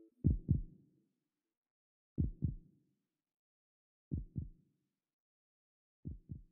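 Heartbeat sound in a break of the song: three slow lub-dub double beats about two seconds apart with silence between them, a fourth starting right at the end.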